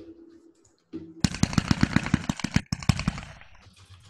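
A 76 Pro Line 13-shot FanSweep Photo Flash Bombard (25 mm) cake slice firing. About a second in comes a rapid string of sharp reports, several a second, which fades out over the last second, heard as the audio of the product's demo video.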